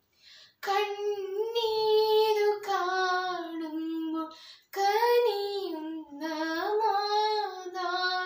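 A girl singing solo and unaccompanied, in long held phrases that waver in pitch. There is a short breath pause near the start and another about halfway through.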